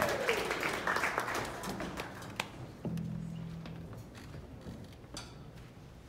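Scattered audience applause with a cheer, dying away over a few seconds. About three seconds in, a short, low held note sounds from one of the big band's instruments.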